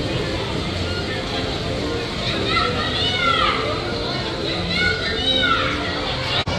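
Children squealing and chattering on a turning carousel, over carousel music and crowd babble. Two high, rising-and-falling shrieks stand out in the second half.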